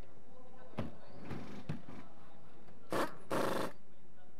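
Rustling and soft knocks inside a DTM race car's cockpit, from the driver moving and handling his gear while seated with the engine off. There are a few light knocks early on and two louder scraping rustles near the end, over a steady low background hum.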